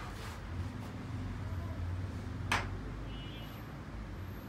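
A single sharp click about two and a half seconds in, the carrom striker being set down on the wooden board, over a steady low hum.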